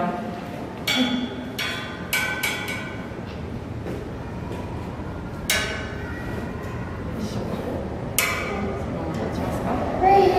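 A series of sharp clicks, each with a brief ring: a few in quick succession early on and single ones later, over a low background murmur.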